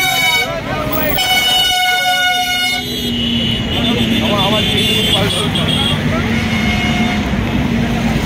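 A vehicle horn sounding in two long, steady blasts: the first stops about a second in, the second stops near three seconds. Voices of a crowd follow, over a low steady hum.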